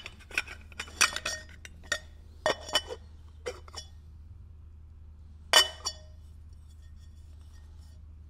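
Metal split-rim wheel halves clinking and knocking against each other as they are handled and fitted together: a quick run of sharp clinks, with the loudest knock about five and a half seconds in.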